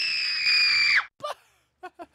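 A shrill, high-pitched scream of alarm, a dubbed 'wah!' held steady for about a second and a half and then cut off abruptly.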